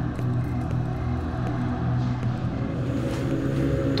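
Low, steady droning tones of a horror background score, sustained without a break.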